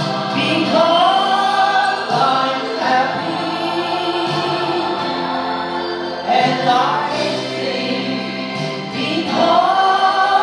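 Gospel song performed live: a woman singing into a microphone over an accompaniment with choir voices, the notes long and held.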